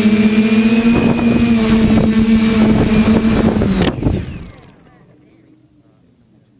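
Quadcopter's electric motors and propellers whirring with a steady hum, with rough crackles from about a second in. A sharp knock just before four seconds, then the motors stop and the whir dies away as the quad sits in the grass.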